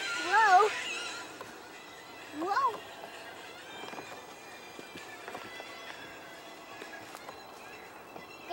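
A child's wordless sing-song vocalizing: a wavering up-and-down call at the start and a short rising one about two and a half seconds in, with faint clicks in between.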